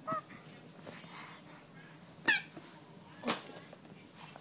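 A small plastic toy trumpet blown by a toddler, giving one short, high, wavering honk about two seconds in. A sharp click follows about a second later.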